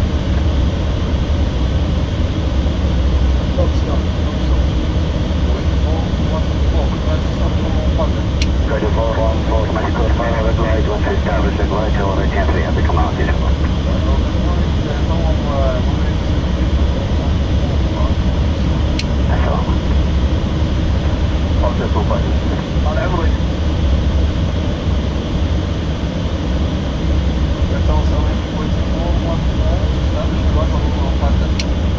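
Steady flight-deck noise of an airliner in flight: a loud, even low rush of airflow and engines filling the cockpit. Faint voices, like radio chatter, come and go through it in the middle.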